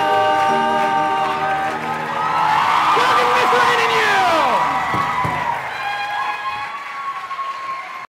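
Several men's voices holding the final note of a song, which breaks off after a second or two. An audience then cheers and applauds, with a few whoops that fall in pitch, and the noise fades off toward the end.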